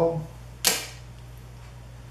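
A single sharp plastic click about two thirds of a second in, from a cap being taken off a Canon 18–55 mm image-stabilized kit lens.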